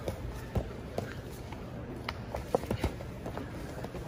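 A handful of short, sharp thumps and slaps from grapplers' bodies, hands and feet on a foam competition mat, the loudest a little past halfway, over a steady arena background of faint voices.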